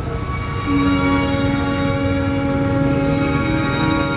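A male singer holds one long, steady note into a microphone over a recorded backing track; the note enters under a second in and is sustained to the end.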